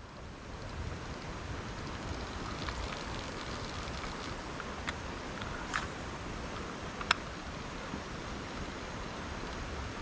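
Steady rush of a rocky creek's running water, with a few faint light clicks in the middle.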